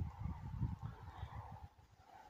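Wind buffeting the microphone in irregular low rumbling gusts, strongest in the first second and dying down near the end.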